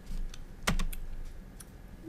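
A few sharp clicks of a computer mouse and keyboard, the loudest two close together a little past half a second in, with a fainter one later.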